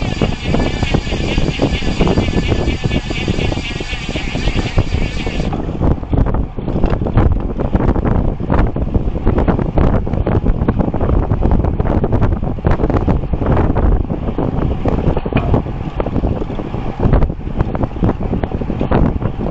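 Wind buffeting the microphone of a bicycle-mounted camera at road-riding speed (about 35 km/h), a dense, gusty low rumble. For the first five seconds or so a higher, warbling hiss sits on top of it and then cuts off suddenly.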